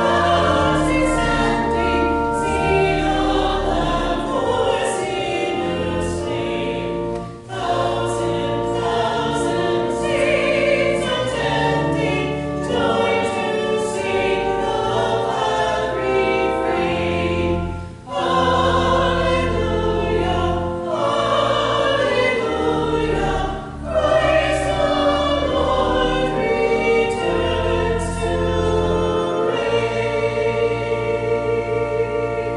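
Church choir singing a choral call to worship, accompanied by pipe organ sustaining low bass notes, with three short breaks between phrases.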